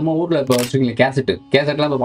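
A man speaking in Tamil, with a brief sharp hiss about half a second in.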